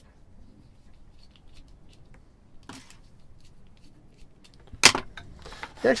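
Small clicks and rustles of a screwdriver tightening a wire into a plastic chocolate-block terminal connector, with one sharp knock near the end as the screwdriver is set down on the wooden bench.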